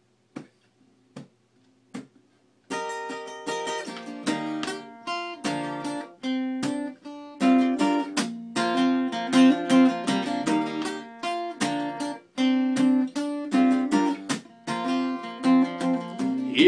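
Acoustic guitar strummed chords, starting about three seconds in after a few sharp clicks.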